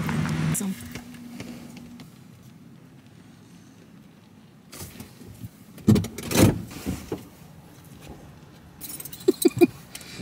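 Inside a parked car: a couple of heavy thumps about six seconds in, like a car door being shut, then a quick run of light clicks and jingles of keys near the end.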